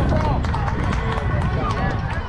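Players and spectators calling out and chattering, several voices overlapping, over a steady low rumble.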